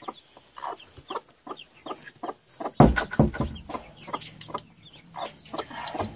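Broody hen clucking while a hand works under her in the nest crate, with a loud thump about three seconds in. Near the end, chicks peep in a quick run of high calls.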